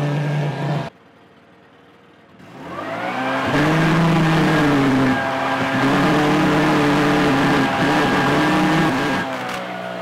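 Leaf blower running steadily, inflating a large weather balloon. About a second in it drops away. It winds back up to a higher pitch and runs loud and steady for about six seconds, then eases to a lower speed near the end.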